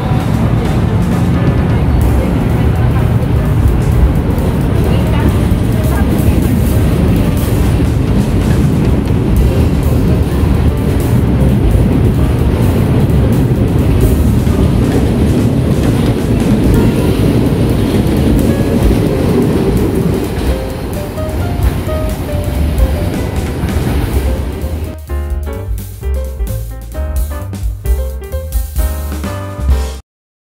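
Santa Matilde electric multiple unit train pulling out past the platform: a steady, loud running noise from motors and wheels on the rails, with background music laid over it. A little before the end the train noise drops away and only the music remains.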